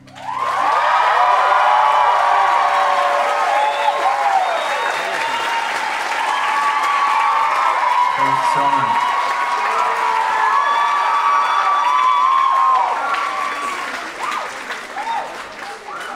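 Concert audience applauding and cheering, with many whoops and high shouts, as a song ends. The crowd noise rises sharply about half a second in over the fading last note of the song, holds loud, and dies down over the last few seconds.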